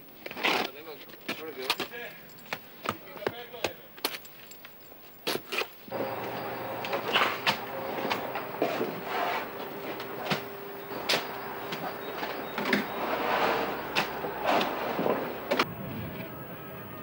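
A shovel scraping and slapping wet mortar out of a wheelbarrow, in a run of short scrapes and clicks. About six seconds in, a louder steady building-site din with a held hum and scattered knocks takes over.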